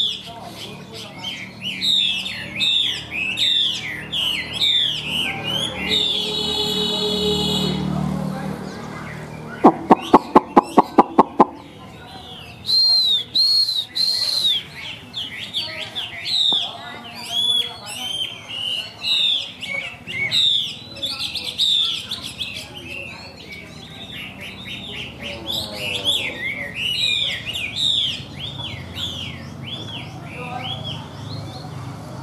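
Chinese hwamei singing a long, varied song of rapid whistled phrases that swoop up and down in pitch. About ten seconds in, a quick run of about nine loud knocks, under two seconds long, is the loudest sound.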